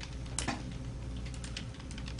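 Light, irregular clicking of typing on a laptop keyboard over a steady low room hum, with one sharper click about half a second in.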